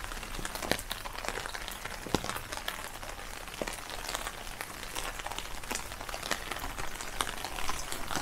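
Steady rain, with many small drops ticking irregularly on an umbrella overhead.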